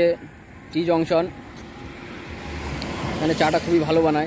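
A road vehicle passing close by, its noise swelling up in the middle and easing off, under a man's speech.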